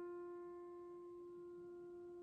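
Grand piano's final note held with the keys down, ringing faintly and fading slowly as the piece ends.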